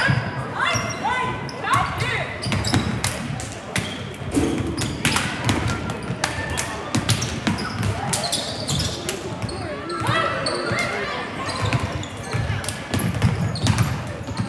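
Several basketballs bouncing on a hardwood gym floor in a large gym, giving irregular, overlapping thuds, with voices in the background.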